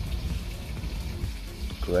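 A freshly lit fire roll of pineapple lily ginger fibres smouldering as a hot ember, with a faint irregular crackle over a low rumble.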